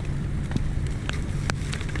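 Steady rain falling in a heavy downpour, a low even rumble with a few sharp ticks of drops hitting close by, over a faint low hum.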